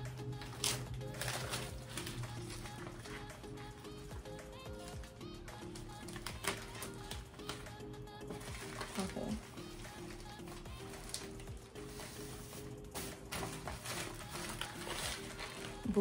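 Soft background music with held, shifting notes, with scattered light clicks and paper rustles from a printed shipping label and a poly bubble mailer being handled.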